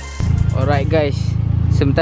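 Mitsubishi Lancer's engine idling with a steady low hum, cutting in suddenly about a fifth of a second in.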